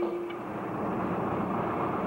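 Steady road and engine noise of a car driving, heard from inside the cabin. A held sung note carries over and stops about half a second in.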